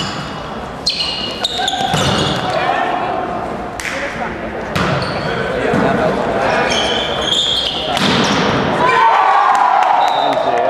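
Volleyball being hit during a rally: about five sharp smacks of hands and arms on the ball, each echoing in the gym hall, with players' voices calling out between them.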